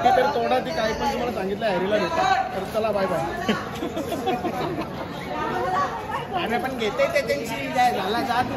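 Several people talking over one another in casual chatter.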